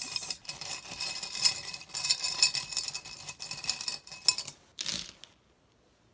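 Small metal charms and beads being stirred and rattled by hand in a glass bowl, a steady jangle of clinks, followed by one louder clatter about five seconds in as a handful is tossed out onto the table.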